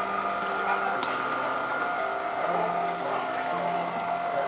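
Small electric motor of a clap-activated curtain mechanism running steadily, a hum of several steady tones, as it draws the curtain along its track.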